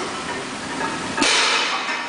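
A barbell loaded with 260 kg of plates is set down onto wooden blocks a little over a second in: a sudden clatter of the plates and bar that rings briefly and fades.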